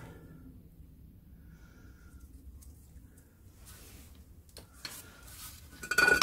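Quiet workshop room tone with a low steady hum, and a few light clicks from metal gearbox parts being handled near the end.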